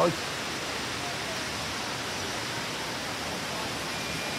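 Steady background noise of a large airport terminal hall: an even hiss with faint distant voices.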